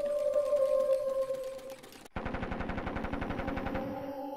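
Sound-collage audio: a held tone for about two seconds that fades away, then an abrupt cut to a rapid, even rattle of about a dozen pulses a second over a droning chord.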